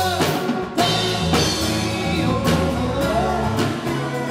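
A rock band playing live: drum kit, electric bass, acoustic guitar and keyboard. There is a brief break just under a second in, then a drum hit brings the drums and bass back in.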